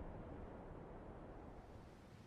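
Very faint, steady hiss of room tone or microphone noise, with no music or speech.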